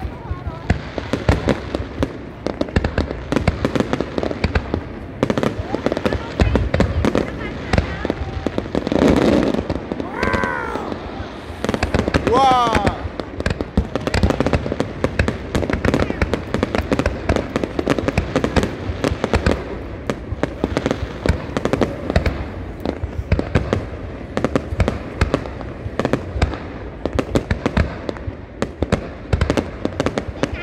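A fireworks display: aerial shells launching and bursting in quick, continuous succession, with bangs and crackling all through. Crowd voices sound under the explosions.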